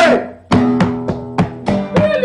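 Acoustic guitar strumming chords, with finger-drum taps keeping a steady beat of about three strokes a second. After a short break, the chords come back in about half a second in.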